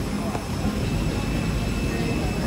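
Steady airliner jet engine noise with a thin, steady high whine over it.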